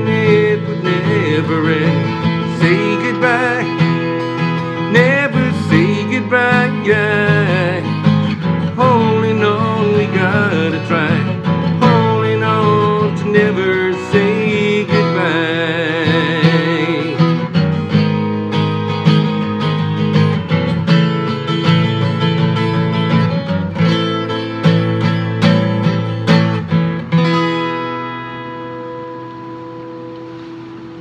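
A man singing wordless lines with vibrato over guitar-led rock ballad backing music. About 27 seconds in, the music fades down to a last held chord.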